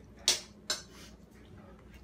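Two quick, sharp breaths about half a second apart from a man eating very spicy noodles, reacting to the burn; his nose is running.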